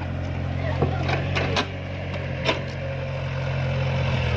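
Mini excavator's diesel engine running steadily, with a few sharp knocks in the first few seconds.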